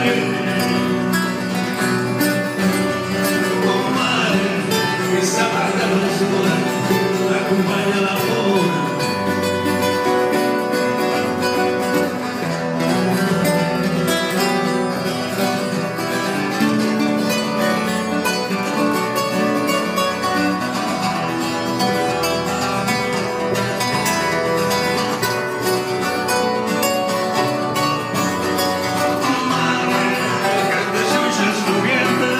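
Live acoustic band music: guitars and a double bass playing a song steadily, with a man's voice singing in places.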